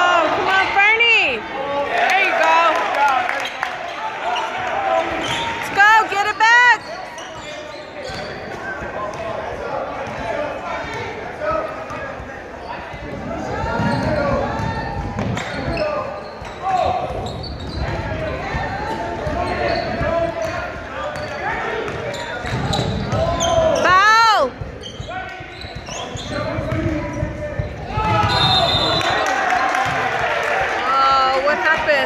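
Basketball game in a gym: a ball bouncing, sneakers squeaking on the hardwood floor and crowd voices, all echoing in the hall. Sharp squeaks come about six seconds in and again near 24 seconds.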